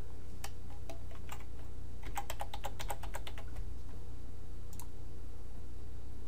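Typing on a computer keyboard: a few separate keystrokes, then a quick run of about ten keystrokes a couple of seconds in as login details are entered. A single click follows near the end, over a steady low hum.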